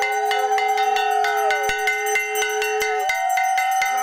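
Brass puja hand bell rung steadily, about four strikes a second, under two conch shells blown in long held notes that bend down in pitch as they end; the lower conch stops about three seconds in and starts again near the end.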